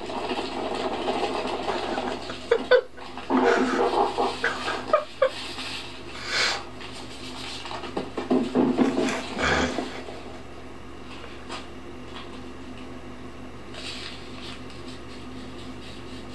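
A young man laughing hard but stifled behind his hands, in breathy, wheezing fits for the first ten seconds or so, then only a low steady hum.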